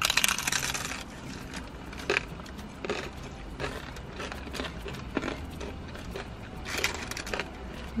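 Crunching as two people bite into fried hard-shell tacos, a dense crackle in the first second, followed by scattered single crunches of chewing.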